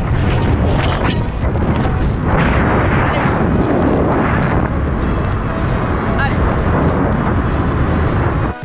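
Wind rushing over the microphone of a camera mounted on a moving car, with road and engine noise underneath. Background music plays under it.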